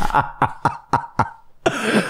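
A man laughing in short breathy bursts, about six of them in quick succession, then a longer breathy hiss near the end.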